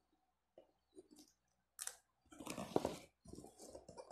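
A cardboard box being opened by hand. A few light clicks and scrapes come first, then a sharp rip near the middle, followed by about a second of tearing and rustling of cardboard, tape and paper.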